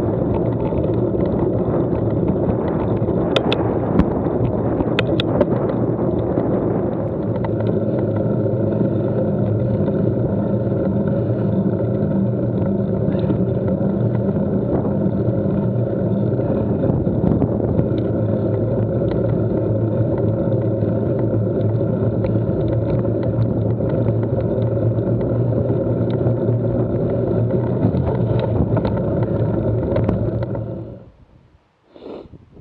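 Steady running noise of a ridden vehicle heard from its on-board camera: a constant hum with even tones over a rush of road and wind noise, with a few sharp clicks about four to five seconds in.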